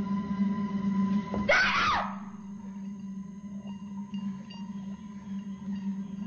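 Drama background score of steady sustained tones. About a second and a half in, a brief, loud, shrill burst with a wavering pitch cuts through it.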